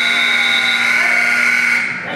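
Gym scoreboard buzzer sounding one long steady tone that cuts off near the end, signalling the end of a wrestling period.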